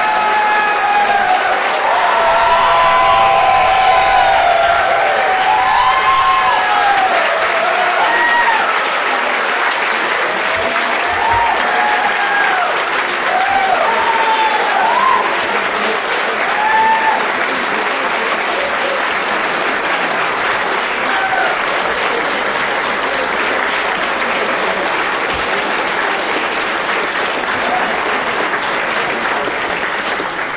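Large audience giving a standing ovation: dense, steady clapping throughout, with shouts and whoops of cheering over it through roughly the first half, settling into plain applause toward the end.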